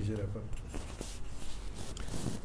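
A lull in a conversation in a small room: a short, soft spoken murmur at the start, then low room sound with a few faint light clicks.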